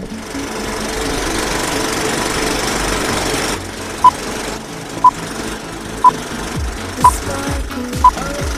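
Vintage film-leader countdown sound effect: a film projector's steady rattling clatter with crackle, then a short beep once a second from about four seconds in, one for each number counted down.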